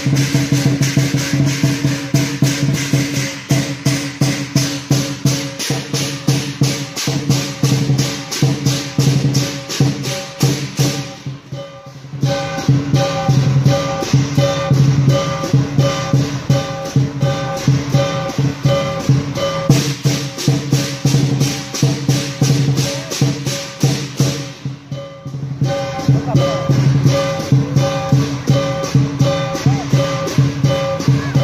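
Lion dance percussion: a large drum, cymbals and gong played together in a fast, even beat. The beat drops away briefly twice, about twelve and twenty-five seconds in.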